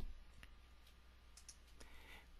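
A few faint computer mouse clicks, scattered light ticks over near silence.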